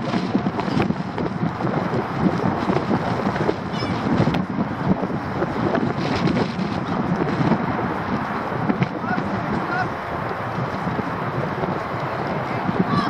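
Many children shouting and calling out over one another during a football drill, with a few short high calls and wind buffeting the microphone.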